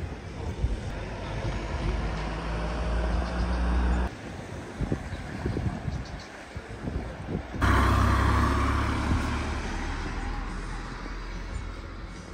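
Road traffic passing close by: a low engine hum swells over the first four seconds and cuts off suddenly, then another vehicle passes from just before eight seconds in, fading away gradually.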